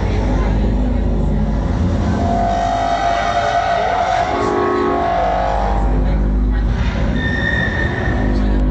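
Drum and bass DJ mix played loud over a club sound system, with heavy, distorted bass and a voice over the music.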